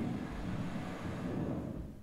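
Strong wind rushing on a camera microphone, played back over loudspeakers: a steady low rush that fades out near the end.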